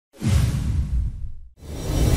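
Whoosh sound effect of a TV news intro, with a deep low rumble under a hiss, fading out about a second and a half in; a fresh swell then rises near the end, leading into loud music.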